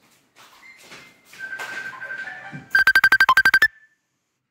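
Electronic ringtone: a held high tone, then a fast trill of beeps, about eleven in a second, that cuts off suddenly just before the end.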